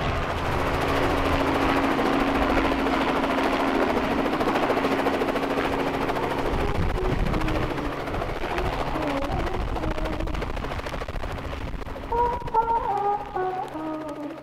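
Small helicopter hovering low and settling to land, its engine and rotor making a steady loud whir with a fast chopping pulse from the blades. Brass-band music comes in faintly near the end.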